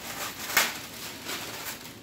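Clear plastic packaging bag crinkling and rustling as it is handled, with a sharp crackle about half a second in.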